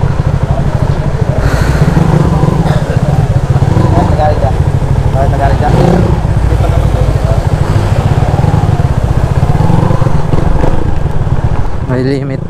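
Loud, steady low exhaust rumble of a Yamaha motorcycle fitted with an open pipe, its engine running at low revs.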